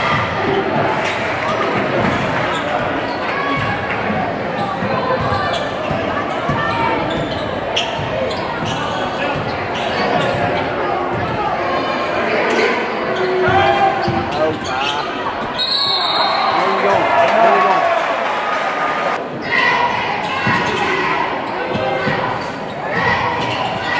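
Basketball dribbled on a hardwood gym floor, with repeated sharp bounces, over the steady chatter of a crowd in a large, echoing gymnasium.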